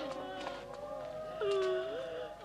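Mourners wailing in several overlapping, drawn-out voices, one cry louder about one and a half seconds in.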